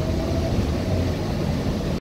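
Steady low rumble of a moving transit bus, engine and road noise heard from inside the passenger cabin.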